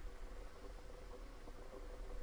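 Quiet room tone: a steady faint hiss and hum with a low, uneven rumble.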